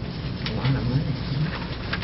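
Faint, off-microphone voice murmuring low in a meeting room, with a light click about half a second in.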